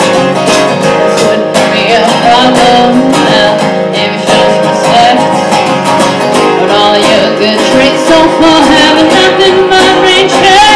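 Acoustic guitar strummed steadily, with a woman singing a melody over it from about two seconds in.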